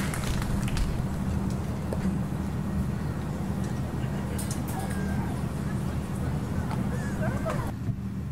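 Outdoor crowd ambience: many people talking at once over a steady low hum.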